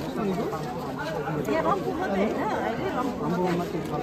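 Speech only: people talking in conversation, with more chatter from the gathered crowd around them.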